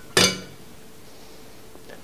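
A laser pointer knocks once against a glass water pitcher as it goes into the water: a short clink with a brief ring.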